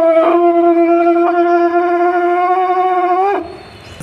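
A man's voice holding one long, loud sung note, steady in pitch with a slight waver, that breaks off about three seconds in.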